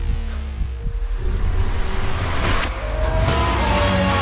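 Soundtrack music with a rising sweep. From about two and a half seconds in, a Formula One car's engine comes in over it, its pitch rising as it revs.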